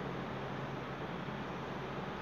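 Steady hiss of background noise at an even level, with no distinct events.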